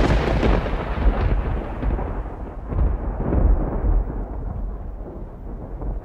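Trailer-style cinematic boom sound effect: a heavy deep boom at the start with a long rumbling tail, further low hits about one second and about three seconds in, the rumble fading toward the end.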